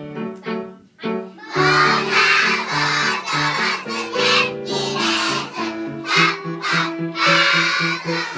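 A piano plays alone for about a second and a half, then a large group of young children starts singing together loudly as the piano accompaniment continues.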